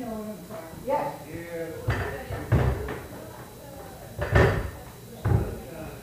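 Indistinct talking with four dull, heavy thumps, the loudest about four seconds in.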